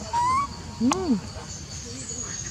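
Monkey calls: a brief rising squeak early on, then a single short rise-and-fall hooting coo about a second in.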